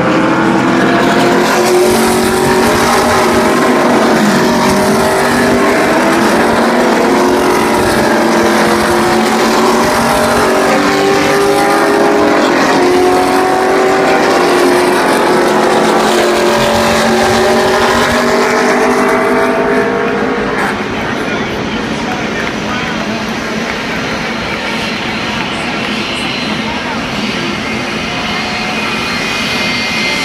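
A field of NASCAR stock cars with V8 engines runs at low, steady speed in a line behind the pace car. Many engine notes overlap and drift slightly in pitch, and the sound drops off a little about two-thirds of the way through as the pack moves away.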